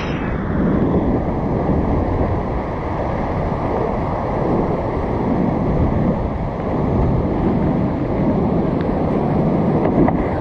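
Loud, steady rush of whitewater rapids around a kayak, a dense unbroken water noise, heaviest in the low end.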